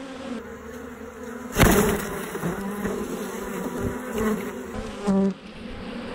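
A mass of honey bees buzzing close by as they cling to and crawl over a queen cage, a steady humming drone. A sharp knock about one and a half seconds in is the loudest sound.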